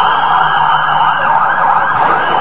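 Police vehicle siren sounding loud and steady.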